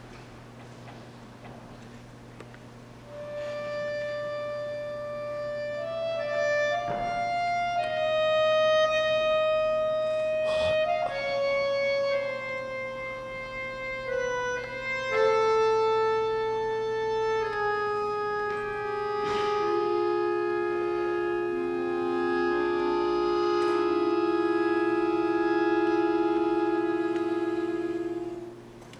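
Bayan (chromatic button accordion) playing a slow, lyrical line of long held reed notes, starting about three seconds in; the melody falls step by step and settles into a sustained chord near the end.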